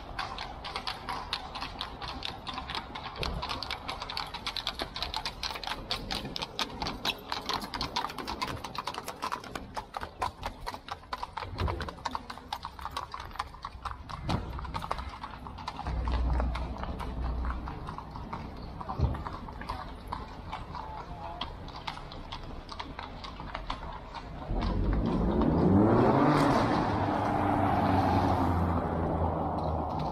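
Hooves of a horse-drawn carriage clip-clopping on cobblestones in quick, steady hoofbeats that fade over the first half. About twenty-five seconds in, a louder motor vehicle passes, its engine rising in pitch.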